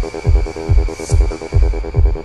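Trance/techno dance track at about 135 BPM: a four-on-the-floor kick drum on every beat under a fast, repeating synth pulse, with a short swell of hissing noise about halfway through.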